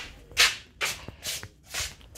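Handheld phone being handled, with four short rubbing swishes about twice a second and a faint tick among them.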